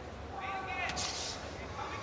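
A high-pitched voice calling out over steady arena rumble, followed about a second in by a short sharp hiss.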